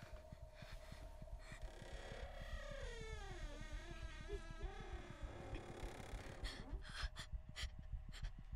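Horror-film sound design: a low rumbling drone with a wavering tone that slides downward through the middle, then a girl's sharp, frightened gasps for breath in the last couple of seconds.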